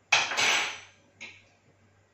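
A sharp knock and a brief clatter of kitchenware as a teaspoon of salt is put into the Thermomix's stainless-steel mixing bowl. A smaller knock follows about a second later.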